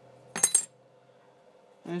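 Two quick, sharp metallic clinks about half a second in: small metal parts knocking together as they are handled.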